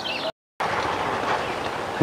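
Steady hiss of outdoor background noise with no clear single source, broken by a split second of complete silence at an edit about a third of a second in.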